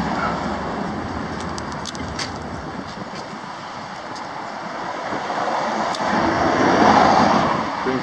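Street traffic noise, with a vehicle passing that grows loudest near the end.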